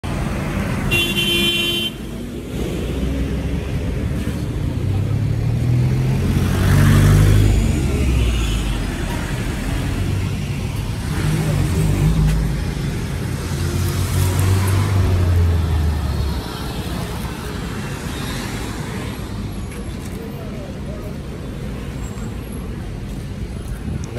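Street traffic: car and pickup truck engines running and passing close, with a short car horn toot about a second in. The low engine rumble is heaviest for the first two-thirds, then eases off.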